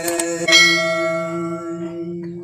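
A bell-like chime struck once about half a second in, ringing out and fading, over a steady held note and a low drone.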